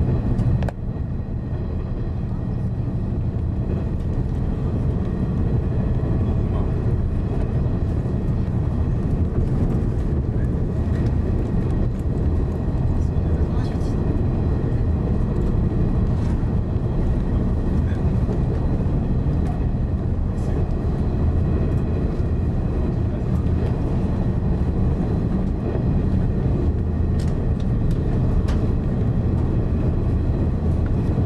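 JR West 485 series electric train running at speed, heard from inside the driver's cab: a steady low rumble of the wheels and running gear on the rails, with a few faint clicks.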